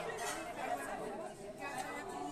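Low chatter of people talking in a bar room while the band is silent.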